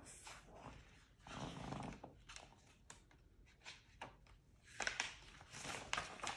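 Pages of a paperback picture book being handled and turned: small paper clicks and rustles, with the loudest rustling as a page is turned near the end. A brief faint murmur comes about a second and a half in.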